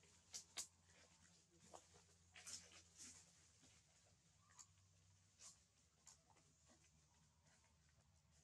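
Near silence: a faint steady low hum with scattered soft clicks and rustles, a few close together in the first three seconds.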